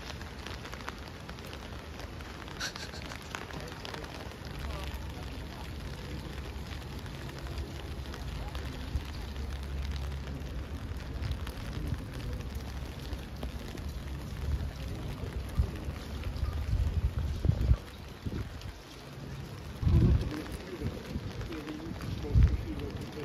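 Rain pattering on an umbrella overhead, a steady spatter of drops with a low rumble underneath. A few louder low thumps come near the end.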